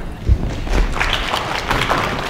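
Audience applauding, a dense patter of claps that builds about two thirds of a second in, with a low thump near the start.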